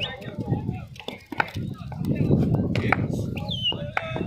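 Murmur and calls of voices from cricket players and onlookers, with a few short sharp knocks.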